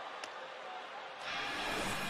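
Steady background murmur of an arena crowd, then about a second in a broad whoosh swells up: the TV broadcast's replay transition sting.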